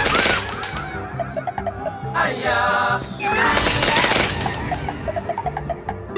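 Slot machine game audio: background music with plucked notes, broken by three loud crackling bursts of explosion effects as winning skull symbols blow up and cascade, the win multiplier stepping up with each chain.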